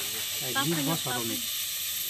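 A man speaking briefly over a steady high hiss.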